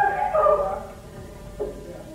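A short pitched cry that bends in pitch and lasts under a second, followed by a brief second one about a second and a half in.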